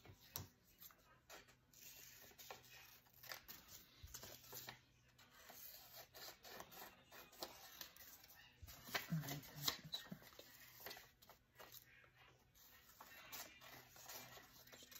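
Faint rustling and handling of paper on a craft table, with scattered light clicks and taps as paper pieces are picked up and moved.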